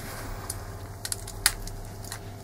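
A handheld lighter clicked a few times without catching, short sharp clicks over a low steady room hum.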